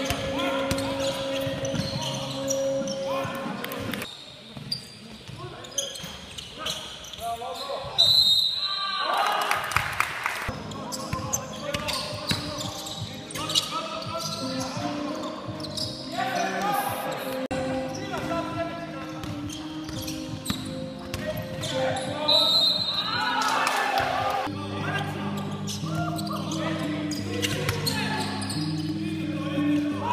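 Basketball being dribbled and bouncing on a wooden gym floor during a game, with players shouting now and then.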